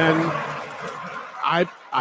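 A man speaking: a drawn-out word trailing off at the start, a pause filled with a soft hiss, then a stammered restart ("I—I") near the end.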